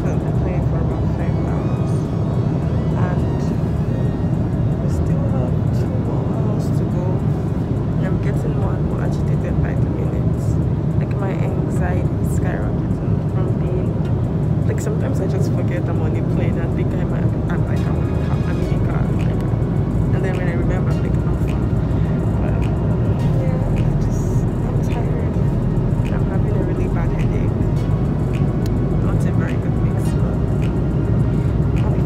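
Steady low rumble of an airliner cabin in flight, the engine and airflow noise, with scattered small clicks over it.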